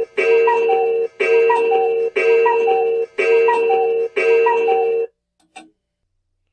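Cuckoo clock calling, a loud two-note cuckoo repeated about once a second, five times, stopping about five seconds in.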